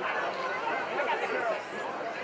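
Several voices calling out over one another, with background crowd chatter.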